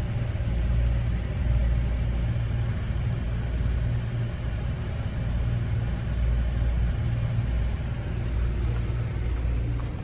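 A steady low rumble that swells and fades every second or so, over a faint background hiss.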